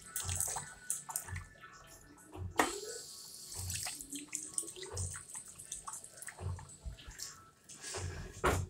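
Water from a sink tap splashing unevenly into a ceramic washbasin, with soft low thumps about once a second underneath.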